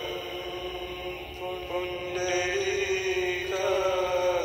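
Mantra-like chanting: a voice holding long notes that slide from one pitch to the next.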